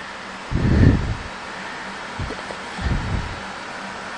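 Steady hiss and faint hum of the space station's cabin ventilation fans, with a few low bumps, the strongest about half a second in.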